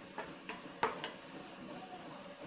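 A spatula stirring minced garlic frying in oil in a nonstick pan, with a few light clicks against the pan in the first second over a faint sizzle. The garlic is fried to golden brown.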